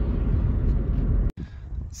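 Steady low road and engine rumble of a moving car, heard from inside. About a second and a half in it cuts off abruptly, leaving a much quieter outdoor background.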